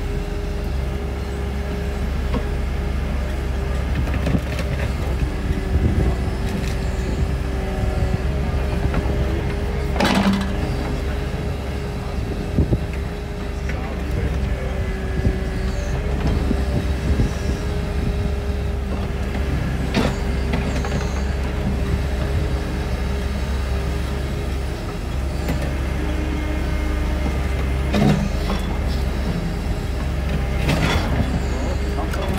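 Mini excavator's engine running steadily with a constant hydraulic whine while the bucket digs out a tree stump, with a few sharp knocks spread through the digging.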